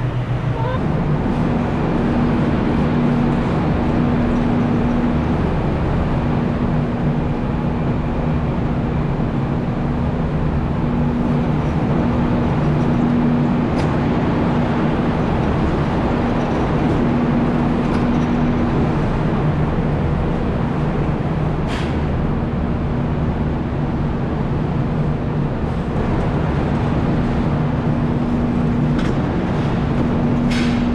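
Loaded shopping cart rolling over a concrete warehouse floor: a steady rumble with a low hum under it.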